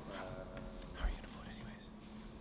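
Faint murmured speech, quieter than normal talking, with a brief low thump about a second in.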